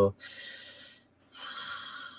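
A person breathing close to a microphone in a pause between words: two soft breaths with a short silent gap between them, the second carrying a faint whistle.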